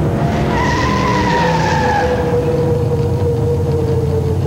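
Stock car's V8 racing engine running hard, a dense rumble with whining tones that slowly fall in pitch.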